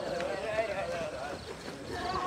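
Footfalls of a group of runners jogging together on a paved running path, with the runners' voices chatting in the background.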